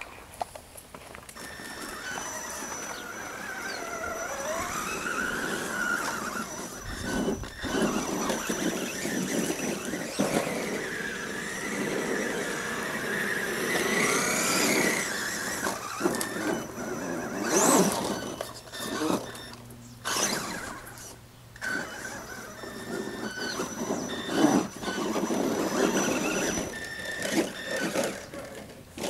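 Electric motor of a Traxxas E-Revo radio-controlled truck whining, its pitch rising and falling as the throttle is worked, over a rough running noise. A few sudden knocks are heard partway through.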